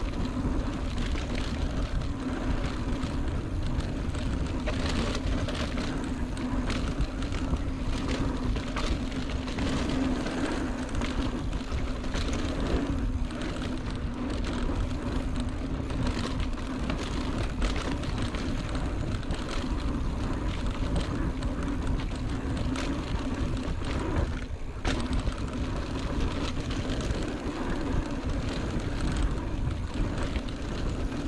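Mountain bike rolling fast down a dirt singletrack, heard from the rider's own camera: a steady rush of tyre and wind noise with frequent small knocks and rattles as the bike goes over the trail.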